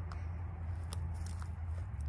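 Faint crunches of footsteps on dry leaves and grass, a few scattered crackles, over a steady low rumble.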